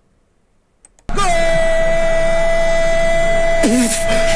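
About a second of near silence, then a loud horn-like tone cuts in suddenly and holds steady at one pitch: a sound effect played in the quiz as the answer is revealed. A voice joins over it near the end.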